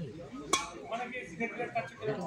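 A single sharp strike of a badminton racquet on a shuttlecock about half a second in, over background voices.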